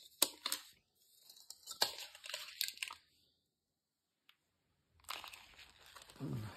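Paper handling on a large hardback book: a sticky note is peeled off a page with a few sharp clicks and rustling, and after a pause a page is turned near the end.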